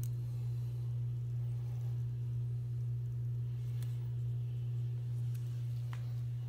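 A steady low hum with no other distinct sound: background room tone.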